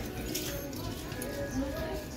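Thrift-store ambience: faint background voices and in-store music, with a few light clicks.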